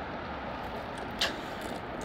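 Steady outdoor background noise with one short click a little past the middle.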